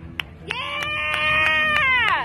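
A spectator's long, high cheering yell that swoops up about half a second in, holds, and falls off at the end, over rhythmic clapping at about three claps a second.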